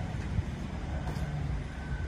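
Low rumble of a car driving past, with road traffic behind it. A faint steady high tone comes in near the end.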